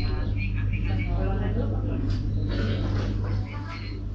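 Indistinct chatter of several customers talking at once in a crowded shop, heard through a security camera's microphone, with a steady low hum underneath that eases a little near the end.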